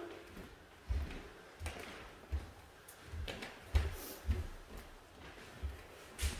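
Bare feet stepping on a wooden floor: several soft, low thumps at uneven intervals.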